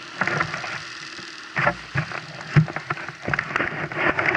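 Irregular knocks and rustling from handling of a scooter-mounted action camera, over a steady low hum.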